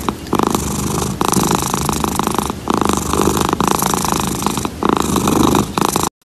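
A domestic cat purring loudly right up against the microphone, in stretches of about a second broken by short pauses for breath.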